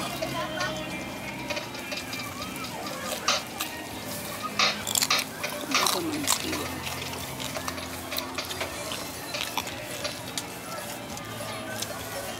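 Busy eatery background: indistinct people talking with music behind, and scattered short clicks and rustles of plastic close by.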